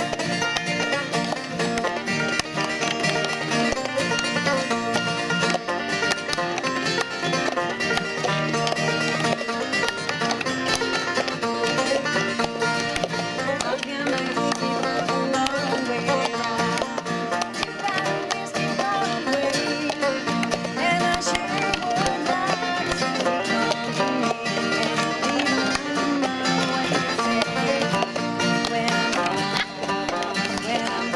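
Banjo and acoustic guitar playing a bluegrass-style tune together, with plastic cups tapped and slapped on a picnic table keeping a rhythm.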